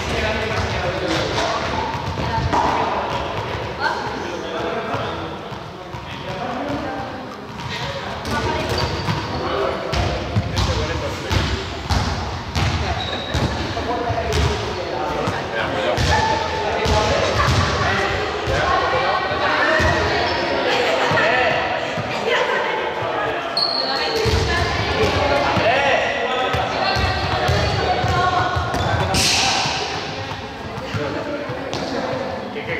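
Balls bouncing again and again on a sports hall floor, with people chattering, all echoing in the large hall.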